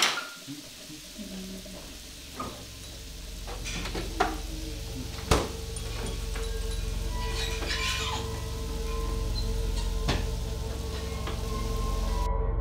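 A few sharp clinks and knocks of dishes and utensils at a kitchen counter, the loudest about four and five seconds in, over a low, steady music drone that swells in from about three seconds in.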